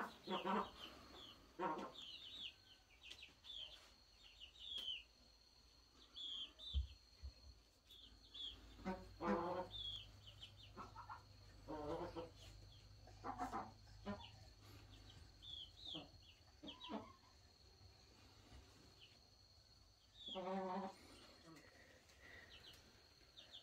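Faint farmyard sounds: chickens clucking now and then, with short high chirps scattered in between.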